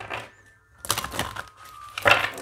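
Tarot cards being handled in the hand, giving two short rustling, flicking bursts, one at the start and one about a second in.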